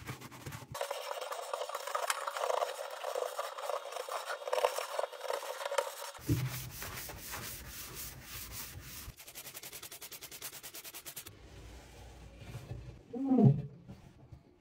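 Scrubbing pad rubbing foamy cleaner over an oven's enamel interior in quick back-and-forth strokes, a rasping rub that changes texture partway through, followed by a cloth wiping the oven walls. Just before the end comes a brief, loud pitched sound that falls in pitch.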